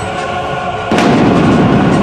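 Dramatic soundtrack music, then about a second in a sudden loud boom-like impact hit that leaves a heavy low rumble running on under the music.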